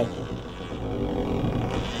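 Circuit-bent Atari synth played by a DIY analog step sequencer in a short four-step loop of oddly tuned pitched notes over a low drone. An LFO is modulating it and reverb is on it, and the LFO makes the sound a little crazy.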